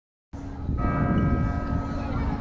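Bell of the Messina Cathedral bell tower struck once about three-quarters of a second in, ringing out and fading, with a low hum carrying on underneath over a low rumble.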